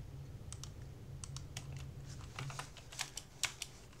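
Computer keyboard keys tapped in a scattered, irregular run of faint clicks, as a short command is typed in, over a low steady hum.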